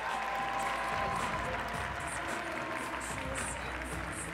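Audience applauding over background music with a steady beat.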